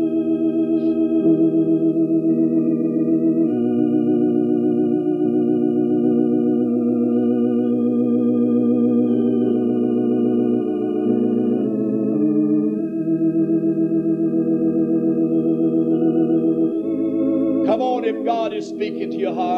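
Organ playing slow, held chords with a steady vibrato, the chords changing every few seconds.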